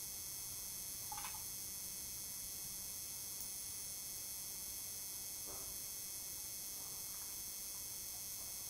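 Quiet room tone: a steady hiss from the recording, with a faint short squeak-like sound about a second in and another faint brief sound around five and a half seconds.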